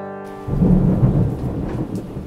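The last acoustic guitar chord rings out and stops about half a second in. A thunder rumble with rain then sets in, loudest just before a second in and easing off after.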